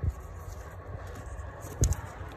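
Handling noise from a plastic wiring-loom plug being worked by gloved hands: a low steady background rumble with one short knock near the end.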